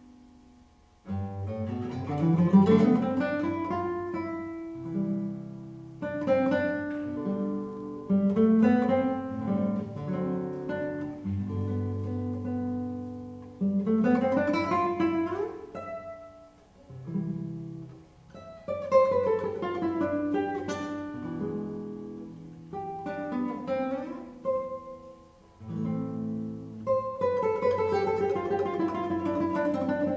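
Solo nylon-string classical guitar played fingerstyle: phrases of sweeping arpeggios, some rising and some falling, with sustained low bass notes and brief pauses between phrases.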